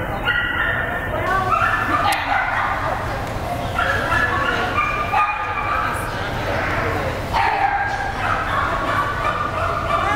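A dog whining and yipping, with repeated short high-pitched calls throughout, over a background of people talking.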